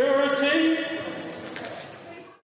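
Raised human voices, with a loud high-pitched exclamation at the start that trails off and fades over about two seconds.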